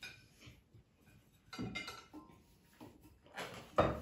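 A few light knocks and clinks of cutlery and plates on a dinner table, the sharpest one near the end.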